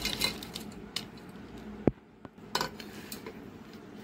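Kitchen utensils clinking and knocking against a dish: a few separate knocks, with a sharper one about two seconds in.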